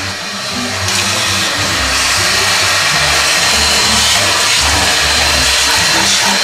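Vacuum cleaner running, its hose sucking dirt and debris off a car's bare sheet-metal floor pan. A steady rushing noise with a thin high whine, growing louder about a second in.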